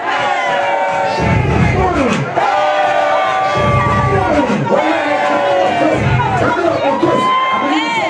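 Party crowd cheering and shouting over loud music, with many voices and a heavy bass beat that pulses every couple of seconds.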